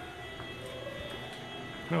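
Steady low room noise with a faint tap or two, heard between stretches of speech.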